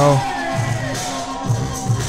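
Music from a dance battle playing back, with steady held tones over a bass note that comes back about every half second to a second. A man's voice says "bro" right at the start.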